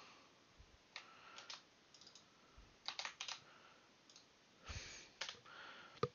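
Faint, scattered keystrokes on a computer keyboard, a few quick clicks at a time with pauses between.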